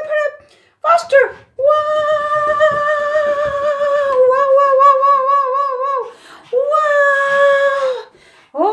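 A woman singing long, held wordless notes at a high pitch: a short falling swoop about a second in, then a long note that turns wavering partway through, a brief break, and another held note near the end.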